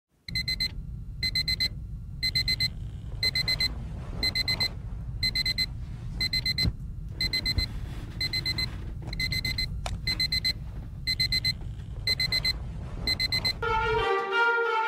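Phone alarm beeping: quick bursts of about four short, high beeps repeating about once a second, over a low steady rumble. It stops just before the end as music begins.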